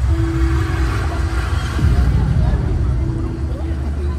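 Deep, loud rumbling bass from an immersive projection hall's sound system, with a few held musical tones and faint voices over it.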